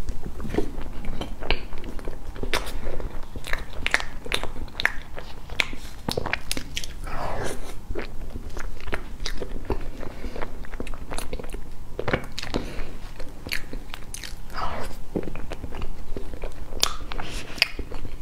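Close-miked chewing of a mouthful of soft cream cake, with many short sharp mouth clicks throughout.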